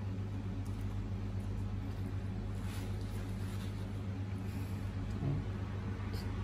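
Steady low hum of room background noise, with a few faint light handling sounds around the middle.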